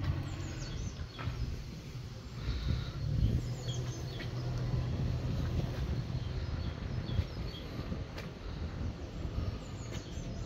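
Small birds chirping now and then over a steady low rumble.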